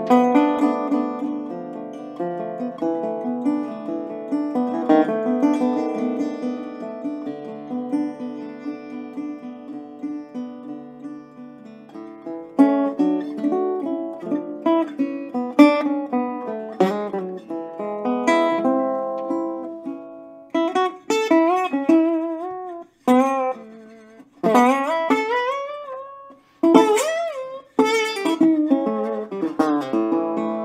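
Mule metal-bodied resonator guitar in open D tuning, played fingerstyle with a slide: ringing chords for about the first twelve seconds, then single-note slide lines with gliding pitch and vibrato, broken by short gaps.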